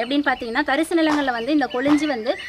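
A woman speaking in Tamil.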